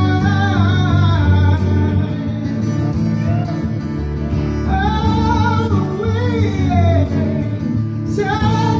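Live acoustic music: two acoustic guitars playing while a man sings the melody, his voice dropping out for a few seconds in the middle and returning.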